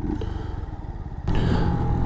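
Brixton Rayburn motorcycle engine running at low revs, then getting louder as it is opened up about a second and a half in, pulling away.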